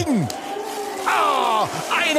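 A man's drawn-out "oh" of disappointment, sliding down in pitch, about a second in, after a short falling syllable. It is a groan at the finish time coming in one hundredth of a second behind.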